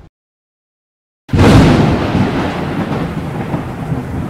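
Line-throwing apparatus rocket firing: after about a second of dead silence, a sudden loud blast that settles into a steady rushing noise.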